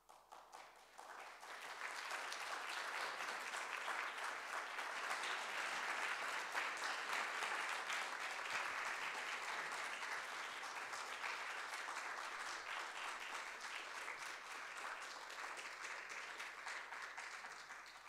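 Audience applause in a lecture hall. It builds up over the first couple of seconds, holds steady, and dies away near the end.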